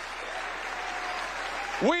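Audience applauding steadily, with a man's amplified voice starting over it near the end.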